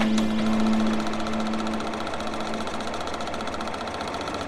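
Logo sound effect: a low held tone that fades away over the first two seconds, over a steady, fast mechanical clatter in the manner of a film projector running.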